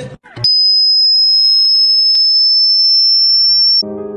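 A loud, high-pitched, single steady electronic tone, like a test tone or bleep. It starts abruptly after a brief noisy burst about half a second in, rises very slightly in pitch, and cuts off suddenly just before the end.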